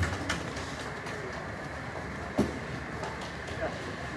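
Room noise in a press hall with faint background voices, a sharp click just after the start and a short thump about two and a half seconds in.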